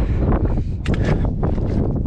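Strong wind buffeting the microphone, a loud, steady low rumble, strong enough to nearly blow a cap off.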